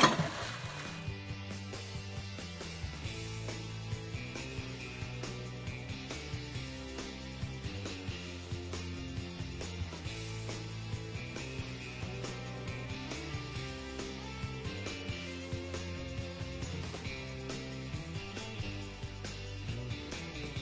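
A single loud splash right at the start, then background music with a steady beat.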